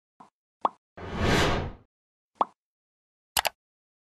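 Logo-animation sound effects: a few short pops, a whoosh about a second in that swells and fades over most of a second, then a quick double click like a mouse clicking a subscribe button near the end.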